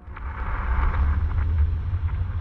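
A deep rumble that starts suddenly and swells, with a crackling hiss over it: a transition sound effect between narrated stories.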